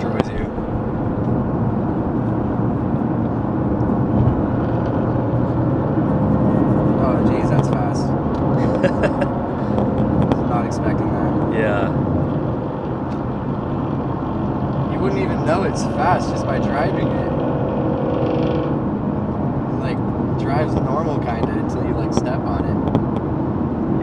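Steady engine and tyre drone inside a Nissan GT-R R35's cabin while it cruises at freeway speed.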